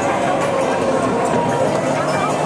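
Crowd of procession participants, many voices talking at once as a steady din, with footsteps and movement of people walking along with the float.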